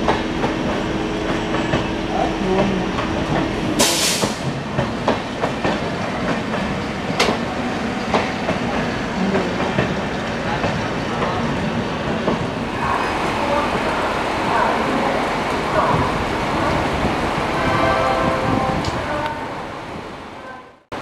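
A passenger train of LHB coaches rolls past slowly as it departs, its wheels clicking over rail joints over a steady rumble. A short hiss comes about four seconds in.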